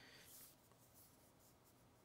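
Near silence: room tone, with at most a faint scratch or rustle.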